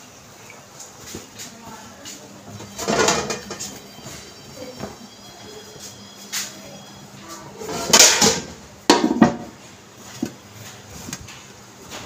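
Metal cooking-pot lid handled and set on a pot of biryani to seal it for dum steaming: a few loud metal clatters and scrapes, the loudest about 8 to 9 seconds in, with quieter handling between.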